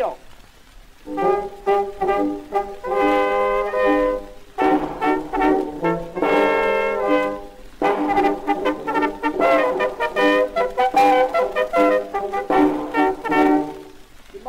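A small brass band starts playing about a second in, heard through an acoustically recorded 1912 shellac 78 rpm record.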